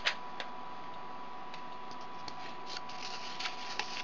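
Light clicks and scratchy rustles of embroidery threads being moved through the notches of a cardboard bracelet loom. One sharper click comes at the start and a cluster of them near the end, over a faint steady tone.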